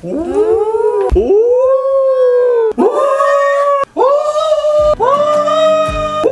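A person howling playfully in a high falsetto 'woo', about five long notes in a row, each sliding up at its start and then held.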